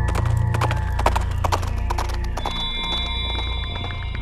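Hoofbeats of several galloping horses, a fast irregular drumming of hooves, over background music with sustained low tones.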